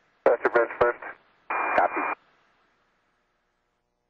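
A man's voice over a narrow-band space-to-ground radio link, clipped by sharp keying clicks. About a second and a half in comes a short burst of radio static with a steady tone in it, then the channel goes silent.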